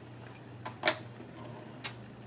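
A cable plug being pushed into an instrument's connector socket: a few small handling ticks and two sharp clicks about a second apart, over a steady low electrical hum.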